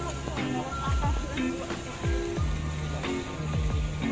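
Background music: a lo-fi instrumental beat with a deep kick drum and steady bass notes under held melodic notes.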